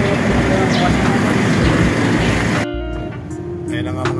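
Dense, steady street noise of traffic and city bustle, which cuts off suddenly a little past halfway. After the cut there is quieter background music with a held tone.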